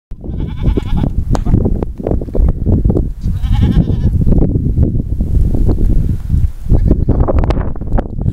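A herd of goats bleating: two wavering bleats, one near the start and another about three and a half seconds in, over a steady low rumble.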